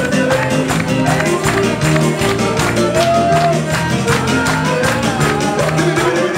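A live band playing upbeat dance music with a steady, quick beat.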